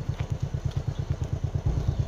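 Motorcycle engine running at steady revs: an even, rapid low putter of about a dozen beats a second.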